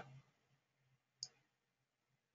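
A single short computer-mouse click about a second in, over near-silent room tone with a faint low hum.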